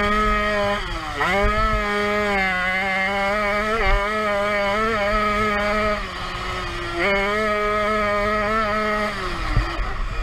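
Jawa 50 Pionýr's small single-cylinder two-stroke engine running hard at high revs. The pitch drops briefly about a second in, again around six seconds and near the end, and climbs back up each time as the throttle is reopened.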